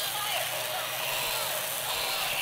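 A child's faint voice over a steady background hiss.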